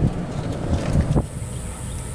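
Golf cart rolling across grass: low running rumble with wind buffeting the microphone, and a thin high whine joining about halfway through.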